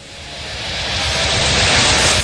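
A rumbling, hissing noise with no clear pitch that swells steadily louder, like a noise build-up in the soundtrack.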